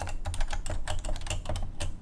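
Computer keyboard typing: a quick, irregular run of about a dozen key clicks as a short line of code is typed and run, stopping just before the end.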